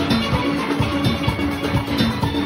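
A full steel orchestra playing: many steel pans ringing out held and rolled notes over a quick, steady drum and percussion beat.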